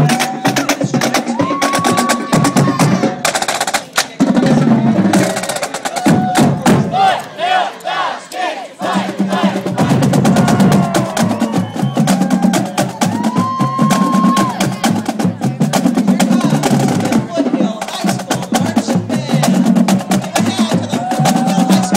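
Marching band drumline playing a rapid cadence on snare and bass drums, with a few brief held notes over it.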